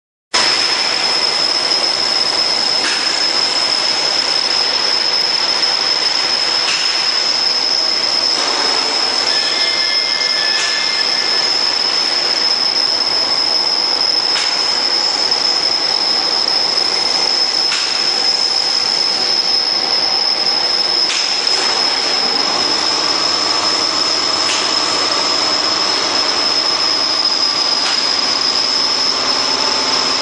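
YFML-720 hydraulic laminating machine running, its rollers turning with a steady mechanical whir and a high, constant whine. A few faint knocks come through, and a lower hum joins about two-thirds of the way in.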